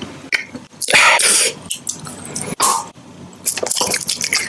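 Close-miked wet mouth sounds of eating a soft food: a loud wet slurp lasting under a second about a second in, a shorter one a little later, then quick wet smacks and clicks near the end.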